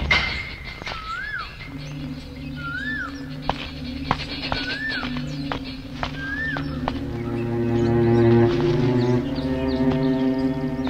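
Suspenseful film score: a low held drone that swells and fills out with more sustained tones after about seven seconds. Over it a bird calls four times, each a short whistle rising then falling, about every one and a half to two seconds.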